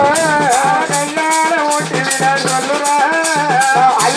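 Tamil themmangu folk music from a drum troupe. A wavering, ornamented lead melody plays over repeated drum beats and a steady high rattle.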